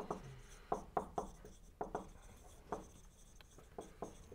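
Marker pen writing on a whiteboard: a faint, irregular run of short strokes and taps as the tip moves across the board.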